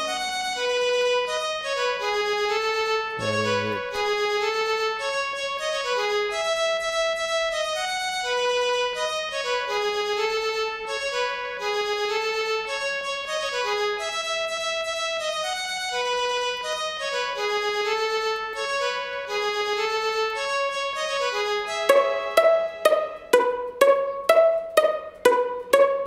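A looping melody of sustained mid-to-high notes from the Purity software synthesizer in FL Studio, on a string-like patch. About 22 seconds in it gives way to Purity's muted-guitar patch playing short plucked notes in a quick, even rhythm.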